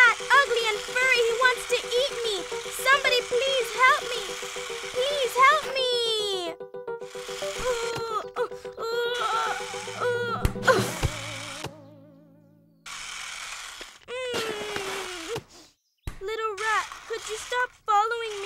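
Children's cartoon soundtrack: music with chirpy notes under wordless character cries and squeals. It fades out about twelve seconds in, with brief silences before the sound picks up again near the end.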